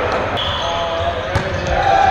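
Busy gymnasium with volleyball games going on several courts: overlapping shouts and voices of players, and a single sharp ball impact about one and a half seconds in, echoing in the large hall.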